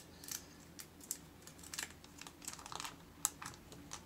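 Irregular light clicks and crinkles of a plastic-wrapped laptop being handled in its cardboard box.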